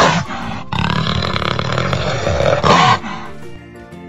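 Jaguar growling twice: a short growl, then a longer one of about two seconds that ends with a drop in pitch about three seconds in. Light children's music plays underneath.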